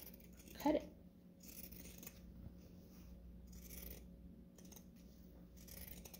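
Pinking shears cutting through fabric in a series of faint snips, roughly one a second, trimming a sewn curved seam allowance.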